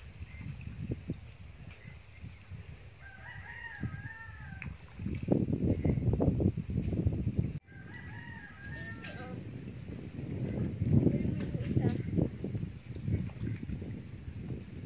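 A rooster crowing twice, each crow a pitched call of a second or two with a bending, wavering tone. Bursts of low rumbling noise, louder than the crows, run through the middle and latter part.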